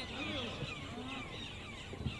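Outdoor sound of a grass football pitch: distant players' voices calling during play, with birds chirping in the surrounding trees over a steady low background noise.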